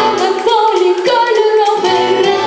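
A boy singing a song into a handheld microphone, holding long notes and stepping from pitch to pitch.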